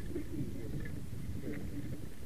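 Horse-drawn carriage rolling along a gravel track: a steady low rumble from the wheels on gravel and the moving carriage, with faint scattered clicks.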